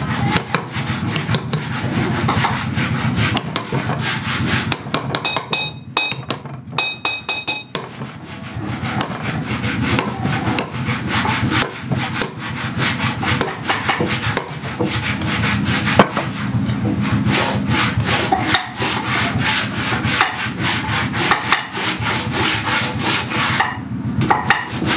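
A hand chisel scraping and cutting into a wooden board in rapid, short, repeated strokes, cutting the recesses for an inlay pattern.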